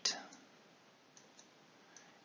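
Faint, sparse stylus ticks on a tablet screen as the number 120 is handwritten, over quiet room tone.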